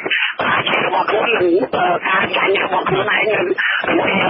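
Speech only: a man talking steadily in Khmer, with the narrow, muffled sound of a radio broadcast.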